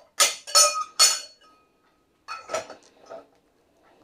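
Glasses and dishes clinking in a dishwasher rack: three sharp clinks in the first second, one leaving a brief ringing tone, then a few fainter clinks.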